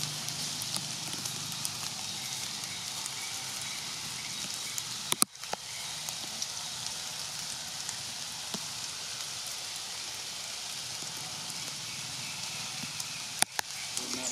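Steady outdoor background hiss. Two sharp clicks break it, one about five seconds in and one near the end, each followed by a brief drop-out.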